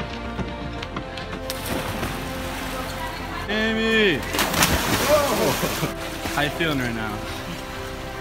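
Background music over the noise of people jumping into a swimming pool: a yell, then a loud splash about four seconds in, with water churning afterwards and another yell.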